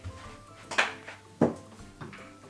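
Quiet background music, with two sharp clacks a little under a second apart, the second the louder, as fraction-circle pieces are set against a whiteboard.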